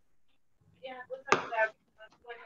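Brief, indistinct speech from a participant over the video call, with a sharp click-like sound in the middle of it.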